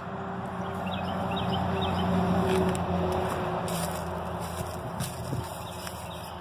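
A motor vehicle passing by, its engine and road noise swelling to a peak about two seconds in and then fading away, with a few faint high chirps early on.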